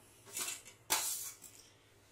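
Fried boondi pearls sliding off a steel plate into a steel bowl of sugar syrup with a short soft rustle, then one sharp metallic clink of steel on steel just under a second in, which then dies away.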